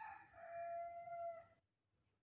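A rooster crowing, heard faintly from a distance: one long, steady-pitched call that ends about one and a half seconds in.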